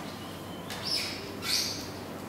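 A bird chirping twice: two short, high calls about half a second apart.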